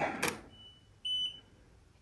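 A camera shutter clicks once. Two high electronic beeps follow, a faint longer one and then a shorter, louder one, from the camera-and-flash setup as the flash-lit shot is taken.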